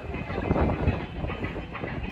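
Murmur of an outdoor seated audience, with a low rumble underneath.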